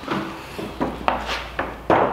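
A metal can of Danish oil being shaken by hand, the oil sloshing inside and the can knocking in a run of short strokes at about four a second, starting a little under a second in.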